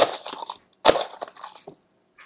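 Snow crunching as a beaker is pushed into a plastic bowl of snow to scoop it up: two crunches, one at the start and one about a second in, each trailing off into lighter crackling.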